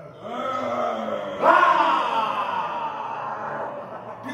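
Men's voices raised in play, without words. About a second and a half in comes the loudest sound: a long, drawn-out vocal cry whose pitch slowly falls over about two seconds. A shorter cry comes before it.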